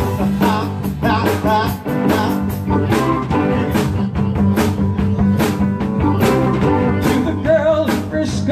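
Live rock band playing: electric guitars, bass, keyboards and a drum kit keeping a steady beat, with a bending lead line above.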